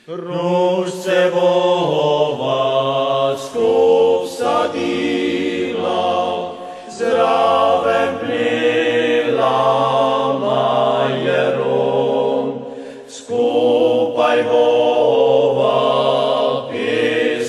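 Background music: a choir singing a song in long phrases, with brief pauses about seven and thirteen seconds in.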